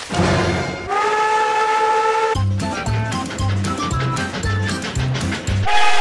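The cracked-sounding steam whistle of Nickel Plate Road No. 587 blows one steady blast starting about a second in. Cartoon music with a bouncing bass line follows, and two short whistle blasts come right at the end.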